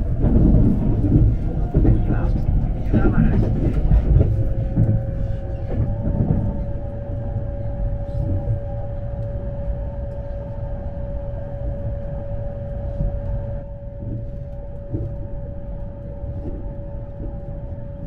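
Running noise of a JR East E257 series electric train heard from inside the passenger cabin: a steady low rumble with a held whine that rises slightly about five seconds in and then stays level.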